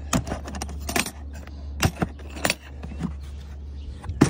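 Sharp clicks and light metallic rattles of a storage box being handled, unlatched and opened, in a quick irregular series through the first two and a half seconds.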